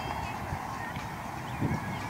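Outdoor ambience: a few short bird calls over a steady hum and a low rumble like wind on the microphone.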